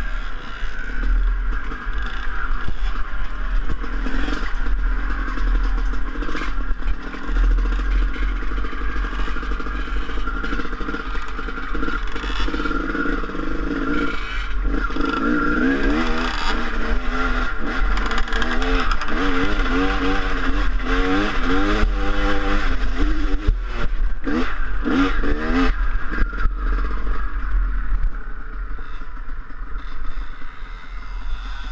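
Dirt bike engine running as it is ridden over a rough trail, its pitch rising and falling several times with the throttle and gear changes in the second half. Heavy wind rumble on the helmet-mounted microphone.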